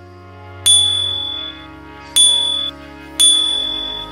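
Three short, bright ding sound effects, the first about two-thirds of a second in and the others about a second and a half and then a second later. Each rings briefly before cutting off, over background music.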